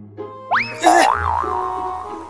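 Cartoon-style comedy sound effects over background music: a quick rising whistle-like glide about half a second in, a short noisy burst, then a wobbling boing tone that settles and holds.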